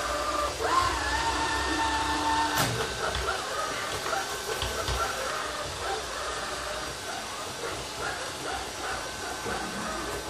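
Aldi Stirling robot vacuum cleaner running across a wooden floor: a steady whir from its suction motor and brushes, with a knock about two and a half seconds in.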